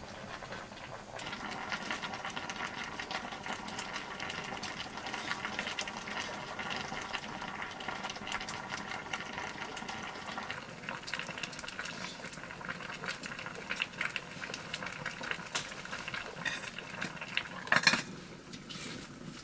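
A pot of food bubbling on a wood fire, with a steady run of small pops and crackles. Under it a steady buzzing tone sounds for the first half and then fades. A single sharp metallic knock comes near the end as the pot's lid is handled.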